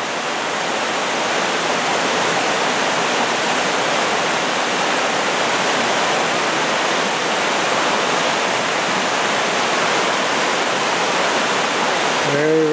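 Waterfall cascading down a rocky creek, a steady rush of water that grows slightly louder in the first couple of seconds.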